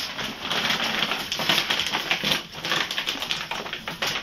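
Plastic bags crinkling and rustling as puppies tug and paw at them: a fast, irregular crackle.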